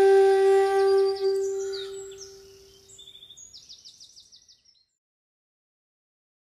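Outro flute music ending on one long held note that fades away over about two seconds. Then a short run of quick, high bird chirps follows.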